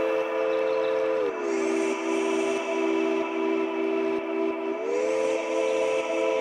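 Electronic music: a held synth chord of several sustained notes, no drums standing out. It glides down in pitch a little over a second in and slides back up near the end.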